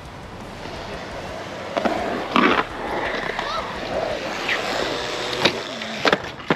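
BMX bike tyres rolling on skatepark concrete: a steady rushing noise that builds about half a second in, broken by a few sharp clacks and knocks from the bike.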